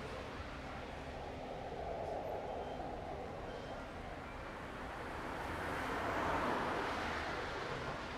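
Outdoor street ambience: a steady wash of noise that swells and then eases back about six seconds in.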